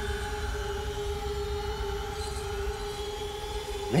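Sustained dramatic background-score drone: two held tones, about an octave apart, over a low rumble.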